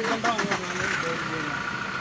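A car engine idling, with a steady high-pitched tone coming in about a second in. A few sharp clicks near the start.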